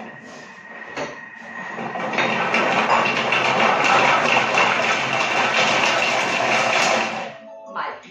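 Thermomix food processor chopping carrot pieces at speed 5. The blade starts about two seconds in with a loud, dense whir of blade and carrot chunks in the steel bowl, runs for about five seconds, then stops.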